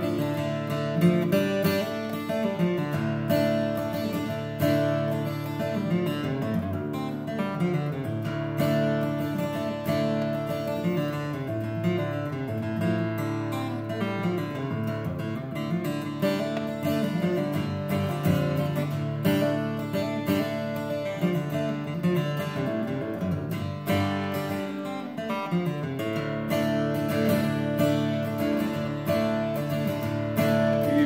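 Solo acoustic guitar strummed and picked in a steady rhythm, an instrumental passage with no singing.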